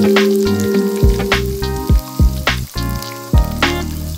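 Dumpling-skin rolls frying in oil in a frying pan, with a steady sizzle. Background music with a regular beat plays over it.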